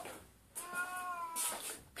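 A domestic cat meowing once, a single drawn-out meow of about a second that rises a little and falls back, from a cat trying to get in.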